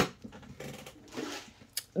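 Small handling noises off to the side: a sharp click at the start, faint soft rustling, and a short tick near the end.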